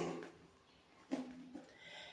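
The last word of a woman's speech fades out. After a short gap, about a second in, there is a brief, quiet sound from her voice, lower and shorter than speech, like a hesitation noise.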